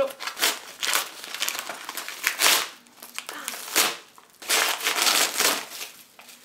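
Yellow padded mailing envelope being torn open and crumpled by hand: irregular ripping and crinkling of the paper, with a couple of brief pauses and the sharpest rips about two and a half and four seconds in.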